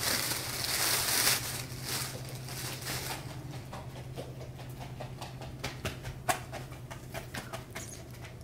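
Plastic shopping bag rustling and crinkling as it is handled, loudest in the first second or so, then quieter with a few scattered clicks and taps over a steady low hum.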